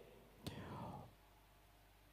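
Near silence in a pause in a man's speech at a microphone, with a faint click and a short soft breath about half a second in.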